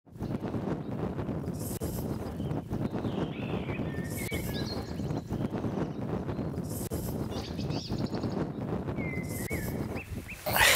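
Birds chirping in a few short bursts over a steady outdoor rumble, with a brief hiss coming back about every two seconds.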